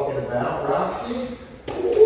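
A man's voice, sung rather than spoken and without clear words, ending on a long held note that begins near the end.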